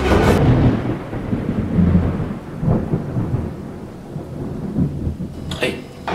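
Rolling thunder with rain, a low rumble that swells and fades; a brief clatter near the end.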